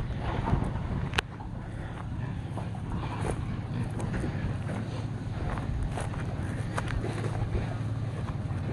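A vehicle engine idling: a steady low hum that holds one pitch, with a few faint scattered clicks over it.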